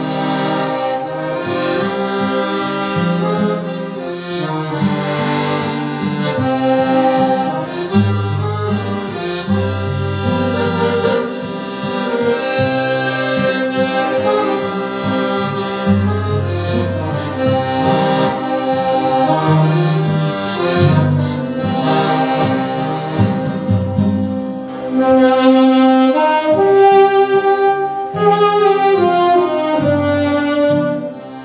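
Live instrumental band: two saxophones play the melody together over accordion and acoustic guitar accompaniment, with a steady bass line underneath.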